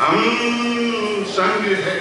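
A man singing into a microphone, holding one long note for over a second before breaking into a short new phrase.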